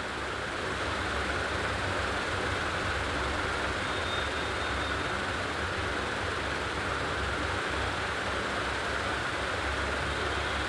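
Steady rushing hiss with a low rumble, typical of a gas stove burner running under a pot of marinated chicken cooking for biryani.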